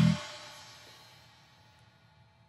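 A live rock band's final hit cutting off just after the start, with cymbals and amplified guitar ringing out and fading away over about a second.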